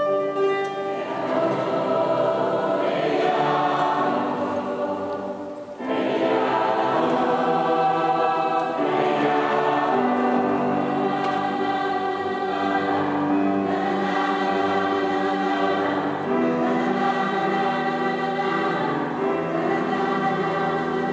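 Mixed choir of men's and women's voices singing held chords in several parts. About six seconds in the singing briefly thins, then all the voices come back in together.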